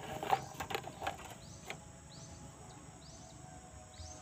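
Quiet outdoor ambience with faint, high, downward-sliding bird chirps now and then, and a few short small clicks in the first two seconds.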